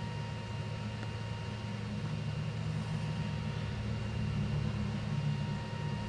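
Jet engines of a Boeing 737 on final approach, a steady low rumble that grows a little louder about two seconds in as the plane nears, with gusty wind rumbling on the microphone underneath.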